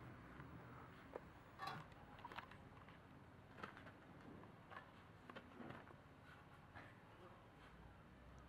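Near silence: faint outdoor background with a few faint, brief sounds, the most noticeable about a second and a half in.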